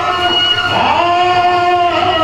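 A voice singing long held notes: one sustained note breaks off just under a second in and a new held note begins, with a slight waver in pitch.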